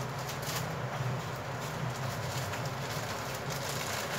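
Steady low background hum under a faint even hiss, with a few faint ticks and knocks.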